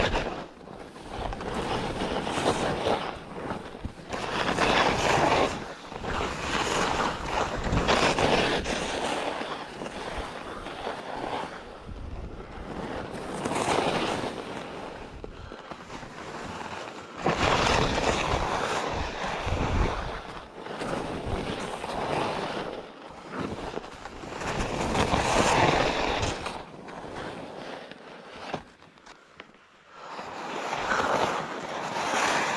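Skis hissing and scraping over packed snow through a series of turns, the noise swelling and fading every few seconds, with wind rushing over the microphone.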